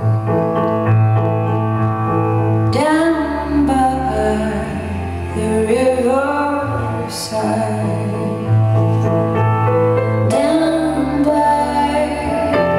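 Live song for female voice, piano and cello, recorded from the audience in a theatre hall. Sustained cello notes and piano chords run under the sung phrases, which come in about three seconds in, again midway, and once more near the end.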